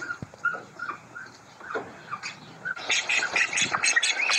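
Domestic ducks calling: a few soft, short calls, then from about three seconds in a loud, rapid run of quacks, several a second.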